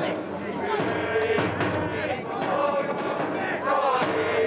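Baseball players yelling drawn-out calls during a fielding drill, several voices overlapping, with a rising-and-falling shout near the end and a few sharp cracks of the ball being hit or caught.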